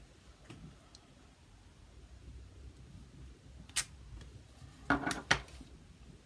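Clear acrylic stamp block handled on a craft desk while a sentiment is stamped on cardstock: faint handling, one sharp click a little before the middle, then a few louder knocks and clacks near the end as the block is set down.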